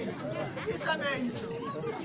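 Speech: people talking, over a background murmur of crowd chatter.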